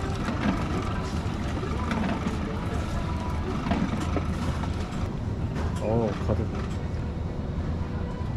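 Zumex automatic orange juicer running with a steady low hum and scattered clicks as it squeezes oranges, while fresh juice fills a plastic bottle from its tap. A brief voice sounds about six seconds in.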